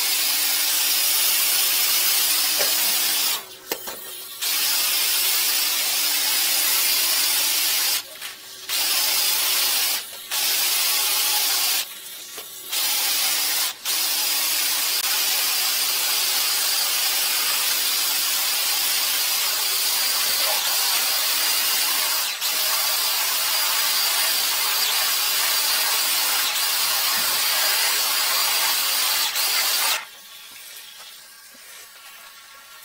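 High-pressure sewer jetter spraying water through its hose nozzle to flush a blocked drain line, a loud steady hiss. It cuts out briefly about five times in the first 14 seconds, then runs on and stops suddenly at the end.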